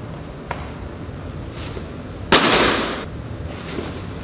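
A thrown baseball hitting the tic-tac-toe target: one sharp crack a little over two seconds in, followed by a short rattling fade.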